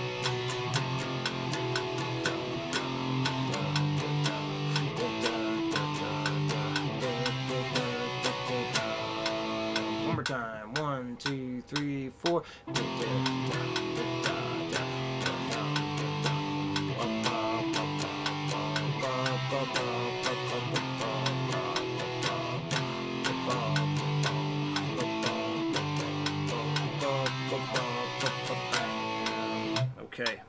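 Electric guitar strumming power chords in a steady, fast rhythm, the chord changing every second or so. About ten seconds in, the strumming breaks off for a couple of seconds while the strings ring and slide, then picks up again and stops at the very end.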